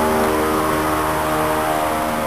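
Steady mechanical hum of a motor running at a constant pitch.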